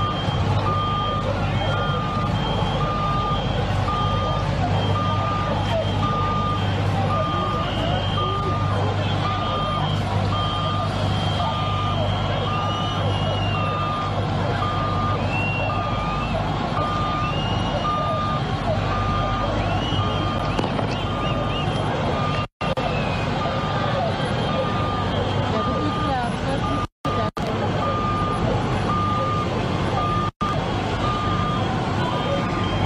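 A heavy vehicle's reversing alarm beeping about once a second, over a steady low engine drone and the noise of a large crowd. The sound drops out briefly a few times near the end.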